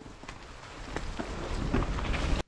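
Wind rumbling on an action camera's microphone with tyre noise and faint knocks from a mountain bike rolling down a dirt singletrack, slowly growing louder.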